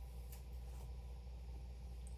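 Quiet room with a steady low hum and a couple of faint ticks from cables and packaging being handled.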